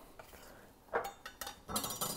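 Chef's knife knocking on a granite countertop as it cuts through a log of dough, then clattering as it is set down on the stone near the end, with a brief metallic ring.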